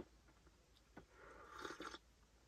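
Mostly quiet, then a small click about a second in and a soft sip of coffee from a glass cup through the second half.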